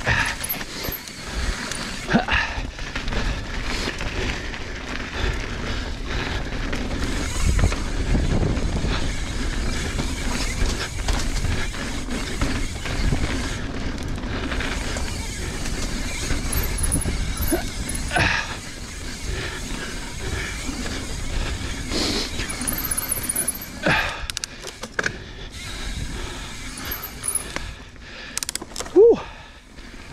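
Mountain bike rolling fast down a dirt trail: a steady rush of tyre and wind noise, broken by several sharp knocks as the bike hits bumps and lands.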